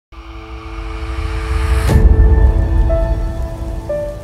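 Short musical logo sting: sustained synth tones over a deep rumble, with a sharp hit about two seconds in that swells loud and then fades out near the end.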